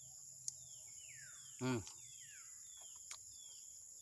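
A steady, high-pitched chorus of crickets or other insects, with a bird giving a run of short, falling whistled notes, about one every half second. A man's murmured 'hmm' comes a little before halfway.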